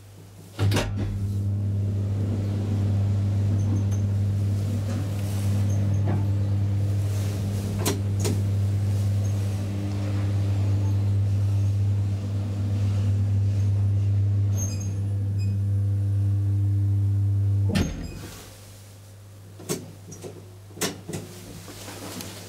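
Schlieren traction elevator on a run: a click about half a second in, then a loud, steady, low electrical hum with overtones as the car travels, cut off with a clunk about 18 seconds in as it stops. A few sharp clicks and knocks follow near the end.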